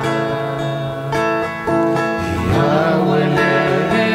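A man singing a slow Spanish worship song to his own acoustic guitar.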